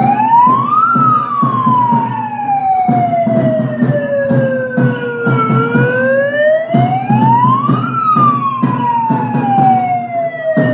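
A siren wailing in long slow cycles: its pitch climbs for about two and a half seconds, then sinks slowly for about four seconds, twice over, with many sharp knocks or beats alongside.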